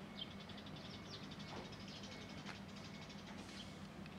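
Faint, rapid twittering of a small bird: a quick run of short high notes through the first half or so, over a low steady hum.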